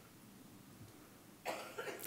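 Quiet room tone, then about one and a half seconds in a single short cough, followed by a smaller second burst just after.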